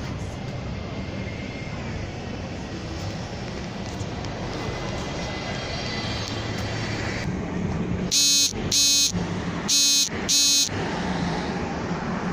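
A vehicle horn sounds four short, loud blasts in two pairs, about eight seconds in, over a steady hum of outdoor background noise.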